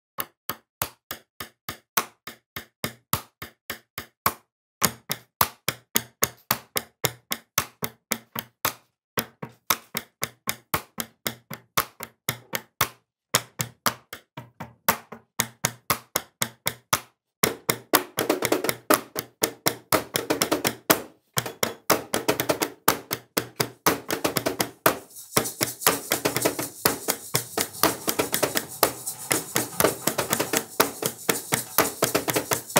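Sharp tapping on a wooden desk in a steady rhythm, about three taps a second, stopping briefly every four seconds or so. Over halfway through a second, denser layer of tapping joins in, and near the end a steady hiss is added on top.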